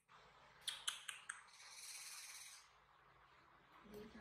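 Faint handling noises: a few small clicks about a second in, then a brief soft rustle as a baby macaque's cloth shirt is pulled and adjusted by hand.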